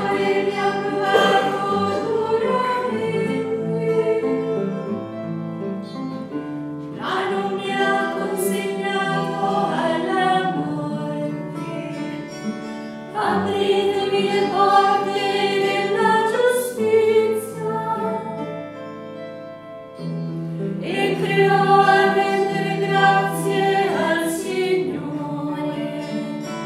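A choir of nuns singing a sacred chant or hymn, in long held phrases that begin about every six to seven seconds, with a brief drop between phrases.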